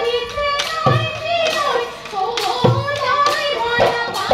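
Live Bihu music: dhol drums beaten with a few heavy strokes under voices singing in a group.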